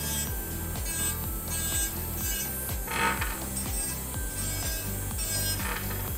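Electric nail drill with a medium barrel bit running at about 17,000 RPM, grinding down an acrylic nail, with a brief louder scrape about halfway through. Background music with a steady beat plays under it.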